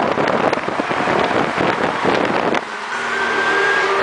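Cars driving past close by give a loud rushing noise of engines, tyres and wind on the microphone. It cuts off suddenly about two and a half seconds in, and music takes over.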